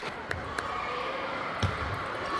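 Table tennis rally: several sharp clicks as the ball is struck by the bats and bounces on the table, with a low thud of a player's foot on the wooden floor late on.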